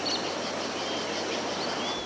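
Rainforest ambience: a steady even hiss with a few faint, thin bird whistles, one near the end.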